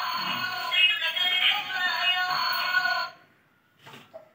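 Electronic jingle with synthesized singing from a baby walker's light-up music toy tray, which cuts off abruptly about three seconds in. A faint click follows near the end.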